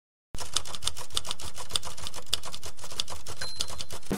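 Typewriter sound effect: a steady run of sharp key strikes, about five a second, over a low background rumble, starting abruptly just after the beginning.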